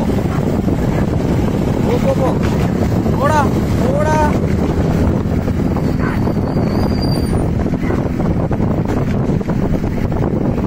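Steady rush of wind and road noise from riding alongside galloping bullock carts, with two short rising-and-falling shouts about three and four seconds in and a brief high whistle near seven seconds.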